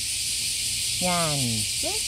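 A woman's voice calling out in a drawn-out tone that falls in pitch about a second in, then a short rising call near the end, over a steady high hiss.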